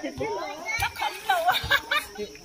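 Lively, high-pitched voices talking and exclaiming, with a few short, dull thumps underneath.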